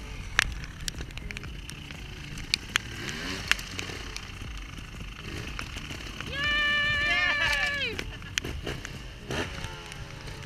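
Trials motorcycle being hopped and balanced on concrete blocks: short engine blips and sharp knocks of tyres and chassis landing on concrete. From about six seconds in comes a loud, high, wavering held yell lasting about a second and a half, falling away at its end.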